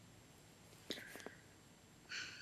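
Near silence, with a few faint, short clicks about a second in.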